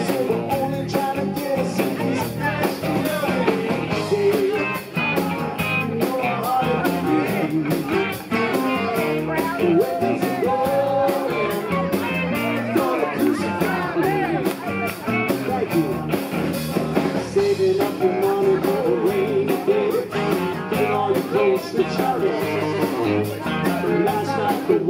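Live rock band playing with a steady beat on drums, electric guitars and bass.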